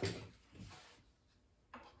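Kitchen utensils rattling as a spoon is pulled from a crock of utensils: a short clatter at the start, a fainter scraping rustle, then a single light clink near the end.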